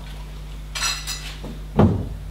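China tea things clinking briefly a little under a second in, then a single dull thump near the end, the loudest sound.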